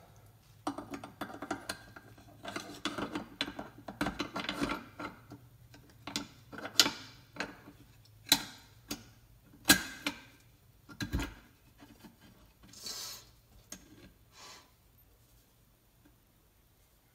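Steel parts of a Mossberg 535 pump shotgun being handled as the bolt is fitted back into the receiver: metal rubbing and sliding, then a string of sharp clicks and knocks through the middle.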